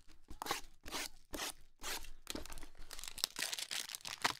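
Trading-card hanger boxes being torn open by hand: a quick string of tearing, crinkling and crunching noises of cardboard and wrapper.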